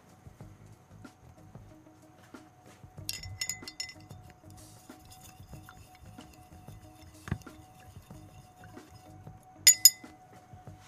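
A paintbrush clinking against a glass jar: a quick cluster of clinks about three seconds in, a dull knock later, and two loud clinks near the end.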